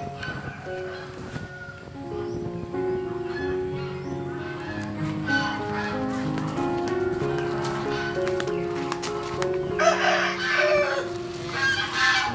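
Background music of slow, held notes. About ten seconds in, a rooster crows once, loud for about a second.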